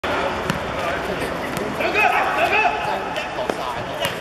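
A football being kicked, giving sharp thuds about half a second in, at about one and a half seconds and near three and a half seconds, with players shouting in between.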